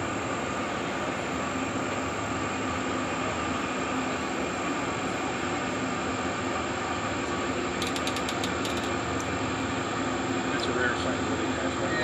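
Towboats' diesel engines running with a steady drone as they push barges past each other on the river. A short run of faint clicks comes about eight seconds in.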